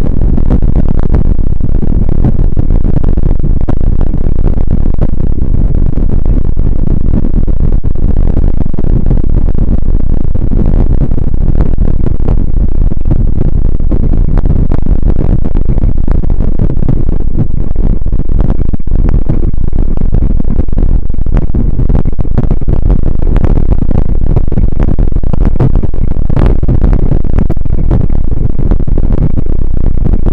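Loud, steady wind buffeting and ride rumble on the microphone of a camera riding on a bicycle pulled at speed along a snowy trail.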